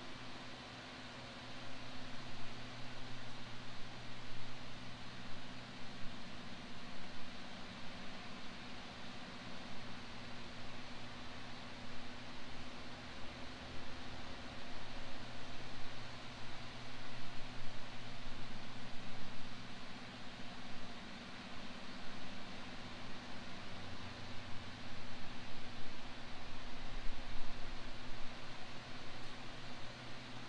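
Steady background hiss with a low, steady hum underneath; no voices or distinct events.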